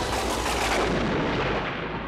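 Cinematic boom sound effect on a scene transition: a sudden hit that dies away into a rumble over about two seconds, cutting off the background music.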